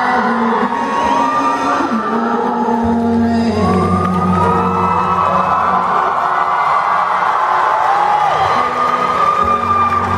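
Acoustic guitar played live, with steady sustained notes, while audience voices whoop and call out over it.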